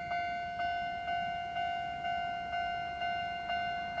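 Japanese level-crossing warning bell ringing in even strokes about twice a second, a steady ringing tone: the crossing alarm signalling an approaching train.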